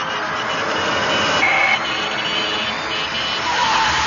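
Loud, dense wash of noise in an electronic drum and bass mix, with a short high beep about a second and a half in and a rising tone near the end. The noise swells, drops suddenly just before the second mark, then builds again.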